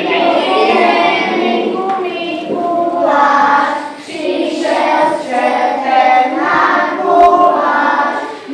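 A class of young schoolchildren singing a song together, with a short break between phrases about four seconds in.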